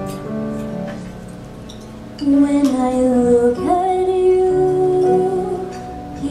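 Soft instrumental accompaniment, then a woman begins singing a slow musical-theatre ballad about two seconds in, louder, with long held notes.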